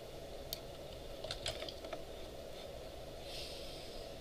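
A few faint, scattered computer keyboard clicks over a steady low room hum.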